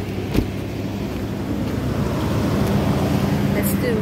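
Car engine idling with a steady low hum, freshly started in winter cold. A single knock comes about half a second in.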